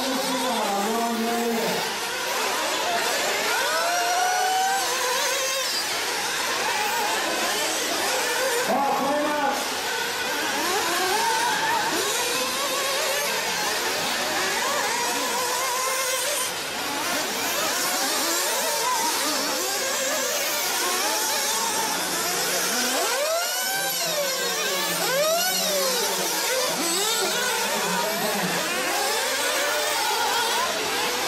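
Several small two-stroke glow-fuel engines of 1/8-scale nitro RC buggies racing together. Their high-pitched whine rises and falls over and over as the cars accelerate and brake around the track.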